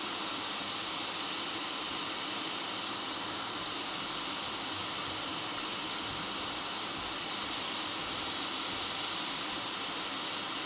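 Hot-air rework station blowing a steady airflow hiss while a small surface-mount transistor is heated for removal or fitting during microsoldering.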